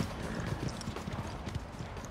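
Several horses' hooves clopping in an uneven patter as they are ridden on a dirt arena.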